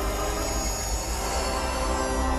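Sustained cinematic drone: many held tones layered over a deep low rumble, steady in level without any beat.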